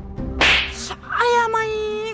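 A hard slap across the cheek: one sharp smack about half a second in, followed by a woman's long, drawn-out cry of pain.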